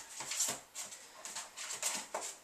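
Soft, irregular rustling and handling noises as an airsoft pistol is set back into its foam-lined cardboard box.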